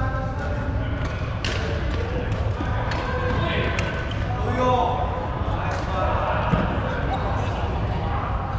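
Badminton play in a sports hall: several sharp hits of racket on shuttlecock and footfalls on the wooden court floor, over a steady background of players' voices.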